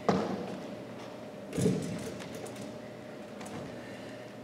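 Footfalls on a wooden gym floor as a person steps down off a folding chair and moves about: a sharp thump at the start, a duller one about a second and a half later, and a few light taps.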